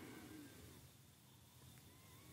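Near silence: room tone, with a few very faint short tones that rise and fall in pitch.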